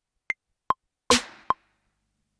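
Sparse drum-machine pattern from Maschine sample playback: short pitched clicks falling evenly on the beat, about two and a half a second, with one fuller snare hit that rings out briefly about a second in.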